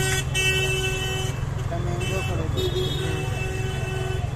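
Busy street background: a steady low traffic rumble with a held pitched tone and indistinct voices.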